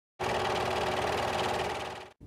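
Film projector running with a fast, even mechanical clatter and a steady hum. It starts abruptly just after the start and fades near the end.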